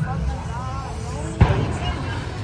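People's voices talking, with one sharp thump or bang about one and a half seconds in.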